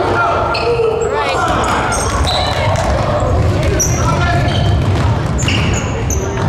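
Basketball game sounds in a large echoing gym: sneakers squeaking in short high chirps on the hardwood floor, the ball bouncing, and players' and spectators' voices.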